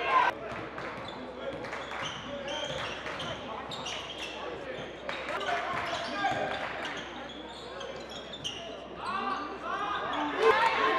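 A basketball bouncing on a gym's hardwood court during a live game, with indistinct shouts from players and spectators echoing in the hall. A sharp knock just after the start is the loudest sound.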